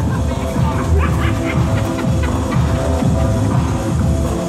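Loud music with a heavy bass played over a roller rink's sound system.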